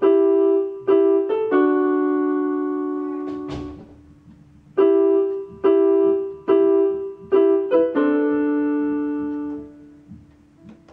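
Electronic keyboard with a piano sound playing a short phrase twice: a few repeated struck chords, then a held chord left to fade. There is a brief pause between the two phrases.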